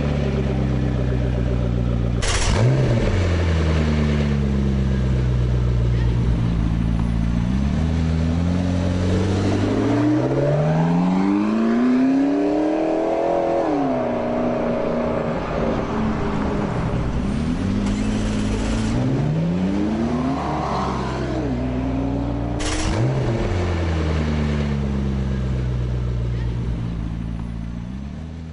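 McLaren 12C's 3.8-litre twin-turbo V8 being revved while stationary. Several quick blips each fall away over a couple of seconds, and a longer rev climbs from about eight seconds in to a peak around thirteen seconds before dropping back. Sharp cracks come at the top of a few of the blips, and the sound fades out near the end.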